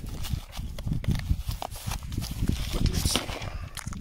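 Irregular rustling, scraping and knocking handling noise close to the microphone as fingers rub over a nylon plate carrier cover and the camera is moved.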